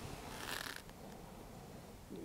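A single audible breath, a soft hiss lasting about half a second, starting about half a second in, over low room tone.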